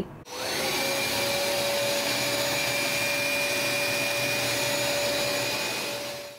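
Hoover SmartWash Advanced Pet upright carpet cleaner switched on, its motor winding up over about half a second to a steady whine and then running evenly.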